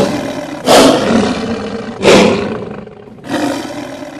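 The MGM studio logo's recorded big-cat roar, sounding four times in a row, each roar starting loud and then fading.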